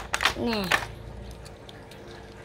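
A short exclamation from a person's voice, falling in pitch, in the first second, then quiet room tone with a faint steady hum.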